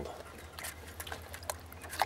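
Hands kneading a cotton sock full of leaf mold under water in a bucket: irregular small wet squelches, drips and splashes.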